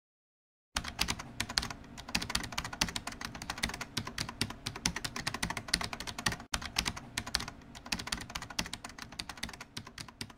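Computer keyboard typing sound effect: rapid, irregular key clicks that start about a second in, break off for an instant partway through and thin out near the end.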